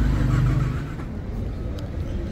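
Car engine idling with a steady low hum, which drops away about a second in, leaving quieter street background.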